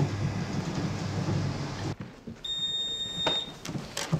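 A low rumbling drone that stops abruptly about two seconds in, followed by a single steady high electronic beep lasting about a second, then a couple of sharp clicks near the end.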